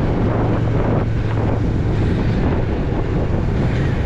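Wind rushing over the microphone of a riding motorcycle, over the steady low hum of a Yamaha MT-03's engine held at an even cruising speed.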